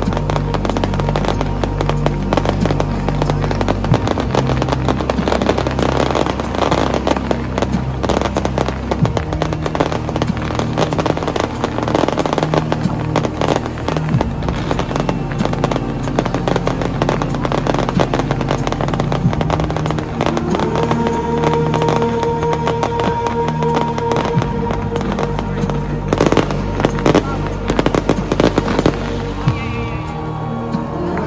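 Fireworks display over a stadium: many shells bursting in rapid bangs and crackles, over steady music. About two-thirds of the way in, a held tone joins the music, and near the end the bangs come thicker.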